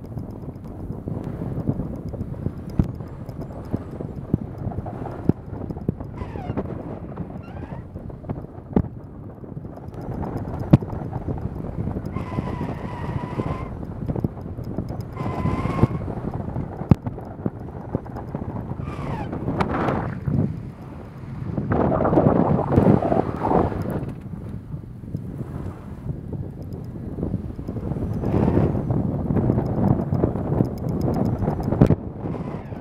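Wind buffeting the exposed microphone of a camera on a Tesla Model 3 Performance driving on a snow-covered ice track, over a steady rumble of tyres on snow and ice with scattered clicks. Twice, about halfway through, a short high whine from the car's electric drive rises and falls, and the noise grows louder in stretches later on.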